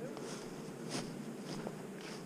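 Footsteps through grass and brush, four short steps about half a second apart.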